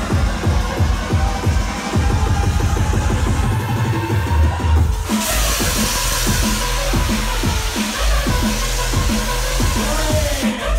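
Loud electronic bass music from a DJ set at a rave: a fast, bass-heavy beat in the style of drum and bass or dubstep. About halfway through, a bright hiss of high sound and deeper bass come in and carry on.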